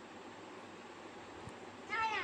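Quiet room tone with a faint click about one and a half seconds in, then a young child's high-pitched voice starting right at the end.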